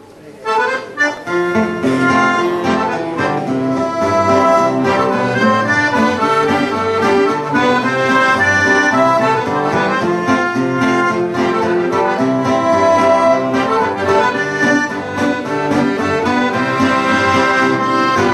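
Accordion playing a tune, held chords over a repeating bass pattern, starting about half a second in.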